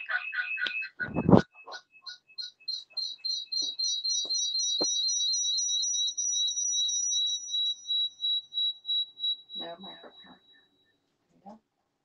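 Audio feedback loop between two phones streaming at once: a rapid train of high-pitched electronic chirps, about four or five a second, that slowly dies away near the end. A thump comes about a second in, and a short burst of garbled, echoed voice just before the chirping stops.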